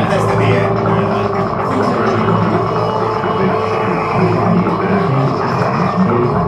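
Live electronic music: a dense, steady drone.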